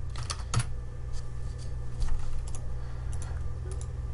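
Computer keyboard typing: a quick run of keystrokes in the first second, then scattered single key clicks, over a steady low hum.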